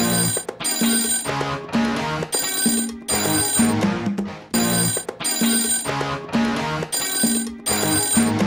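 Game-show title jingle: music with a beat, over which a telephone bell rings in short repeated bursts.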